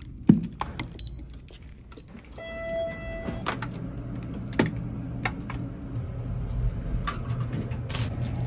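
A sharp click, then a single electronic beep of under a second, followed by a few short clicks as elevator buttons are pressed, all over a steady low hum.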